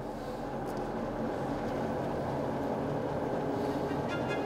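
Two-post car lift's electric power unit running steadily as it raises the car.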